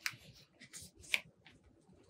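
Pages of a paperback picture book being turned by hand: two short papery rustles about a second apart, the second sharper, with faint paper scrapes between.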